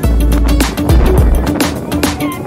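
Background electronic dance music with a heavy bass and a steady beat.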